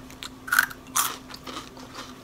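Cheetos being bitten and chewed close to the mouth: a few crisp crunches, the loudest about half a second and a second in, then softer chewing. A faint steady hum lies underneath.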